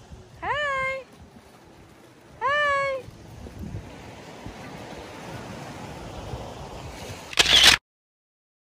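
A baby's two short high squeals, each rising in pitch and then held for about half a second, over a steady rushing background. Near the end there is a brief loud noise burst that cuts off suddenly.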